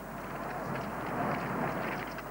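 Steady trackside noise as a pack of cross-country skiers skate toward the camera: the even swish of skis and the planting of poles on snow.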